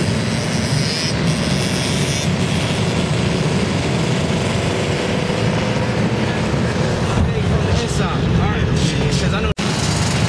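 Many dirt bike engines running and revving together under a dense, steady rumble, with some rising and falling revs about three-quarters of the way through. The sound drops out for an instant shortly before the end.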